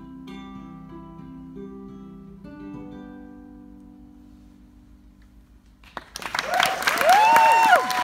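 Ukulele plucking the last notes of a song, letting them ring and fade away. About six seconds in, the audience breaks into loud applause and cheering, much louder than the playing.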